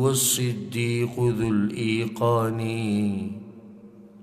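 A man chanting Arabic verse in a slow melodic recitation, drawing out long held notes, then trailing off a little over three seconds in.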